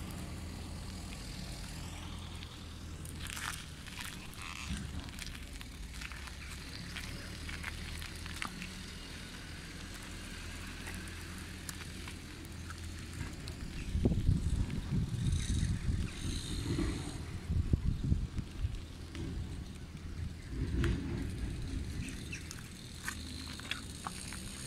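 A bicycle without suspension ridden over paving stones and patched asphalt, heard through the camera fixed to it. A steady low rumble of riding gives way, about halfway through, to a run of loud, irregular jolts and rattles as the bike shakes over the rough surface.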